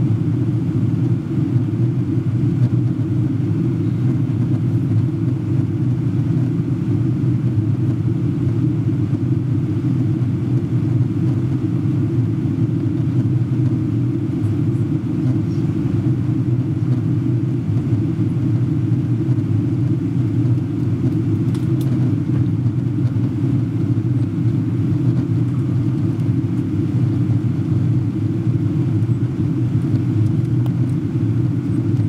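Steady cabin rumble of a Boeing 777-200 airliner in flight, heard from a seat near the back of the cabin: engine and airflow noise, low and unchanging in level.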